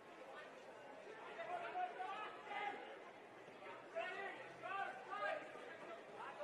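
Faint, indistinct speech in short broken phrases, too low to make out the words.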